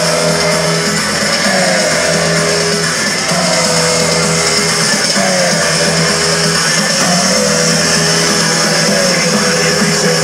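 Loud electronic dance music of a DJ set, played over a festival sound system and heard from the crowd. A short synth phrase with falling notes repeats about every two seconds over a steady bass line.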